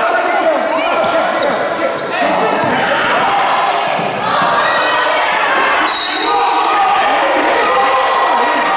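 Basketball game in a gym: a basketball bouncing on the hardwood court under a steady din of players' and spectators' voices, echoing in the hall.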